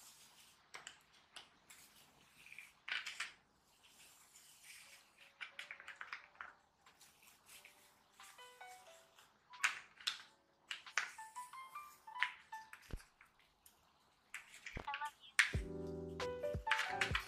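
Stiff paper backing crackling and rustling as it is peeled off a watermelon-slice card, with the sharpest crackles about three seconds and ten seconds in. Soft background music plays under it, with a simple melody of short notes entering about five seconds in.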